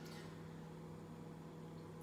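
Quiet kitchen room tone with a faint steady low hum.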